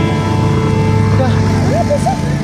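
Car engine and road noise heard from inside the moving vehicle, under steady background music and voices.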